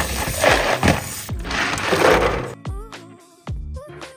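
Tap water pouring onto a plastic colander full of blanched sea snails, their shells clinking and clattering against each other, for about two and a half seconds. After that, background music with held tones takes over.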